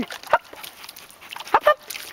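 Dog whimpering at the water's edge, with a brief high yip about one and a half seconds in, reluctant to go in for a swim.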